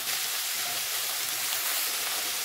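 Chopped carrots, bell peppers, onions and spring onions sizzling steadily in hot vegetable oil as they are stir-fried in a pan.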